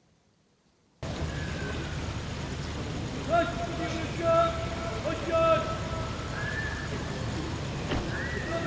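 Drawn-out shouted parade words of command: several long held calls over a steady noisy background. The sound cuts in abruptly about a second in, after near silence.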